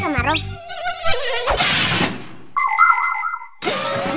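Cartoon sound effects: a short hiss of aerosol spray, then about a second of a whining, buzzing mosquito that cuts off suddenly. Children's show music fades at the start and comes back near the end.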